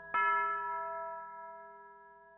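A single bell-like chime struck once, just after the start, its several overtones ringing on and slowly dying away.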